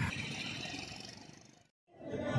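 Road noise from a passing vehicle, a steady rush with a low rumble that fades out.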